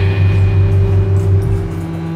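A deep, pulsing drone with a faint steady high tone above it, dropping in level near the end.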